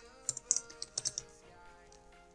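Computer keyboard typing: a quick run of keystrokes through the first second or so, then it stops, over soft background music with held notes.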